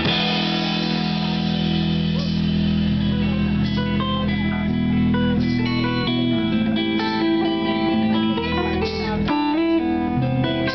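Live indie rock band playing an instrumental passage: electric guitars and bass ringing out sustained, shifting chords, with no vocals.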